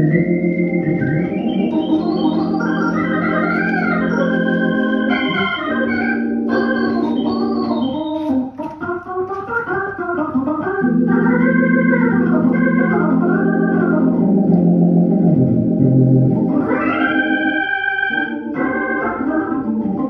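Hammond A100 tonewheel organ being played: held chords with a moving melody line above them. It drops quieter for about two seconds a little before the middle, then a full sustained chord comes back, and high notes enter near the end.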